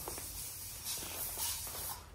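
Steady hiss with a low hum underneath, the background noise of a small room, with a couple of faint brief rustles.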